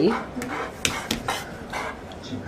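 A dog panting, with about six short, sharp clicks scattered through the middle.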